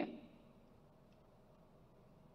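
Near silence: a pause in a man's amplified speech, with the last syllable dying away in the first moment.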